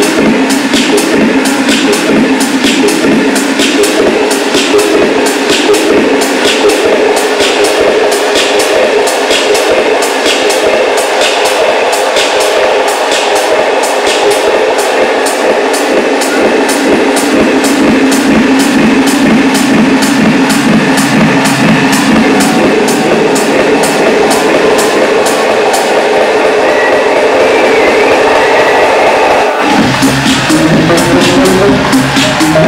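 Live techno played loud over a club sound system, in a stretch with no kick drum or bass: a sustained synth drone with regular high ticks about twice a second. The ticks stop a few seconds before the end, and the low end comes back with a rising sweep right at the end.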